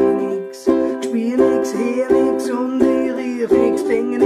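Solo ukulele strumming chords in a reggae rhythm, with a brief break in the strumming just under a second in.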